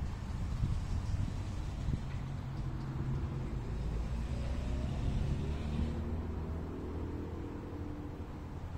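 A low, steady engine hum from a motor running somewhere near, its pitch creeping slightly upward in the second half.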